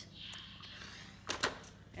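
A clothes iron pressing a folded fabric edge on an ironing board: a soft hissing rustle for about a second. Then, about a second and a half in, come two sharp knocks close together as the iron is lifted off and set down.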